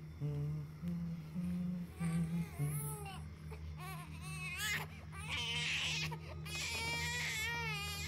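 An infant crying, in repeated wavering wails that grow longer and louder in the second half, over a low steady drone that shifts in pitch in steps.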